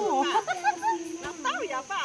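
Several women's voices talking and calling out over one another, with a faint steady high hiss underneath.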